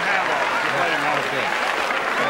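Studio audience laughing and applauding, many voices overlapping with steady clapping.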